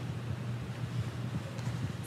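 A low steady background rumble, with faint soft bumps and rustles of a person getting down onto a studio floor.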